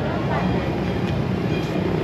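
Steady street background of a busy shopping street: a low rumble of traffic with a faint murmur of voices.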